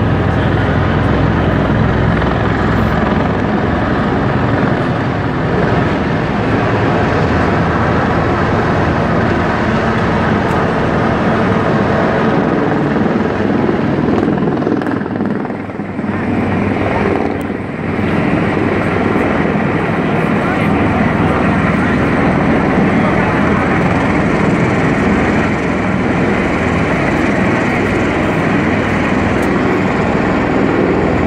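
Marine MV-22 Osprey tiltrotor flying overhead with its nacelles tilted up in helicopter mode: loud, steady rotor and turbine noise that dips briefly about halfway through, then comes back.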